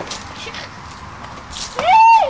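A single meow-like call near the end that rises in pitch, holds briefly, then falls away.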